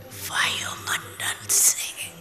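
Soft, whispered speech with no voiced tone, ending in a sharp hissing 's'-like sound about one and a half seconds in.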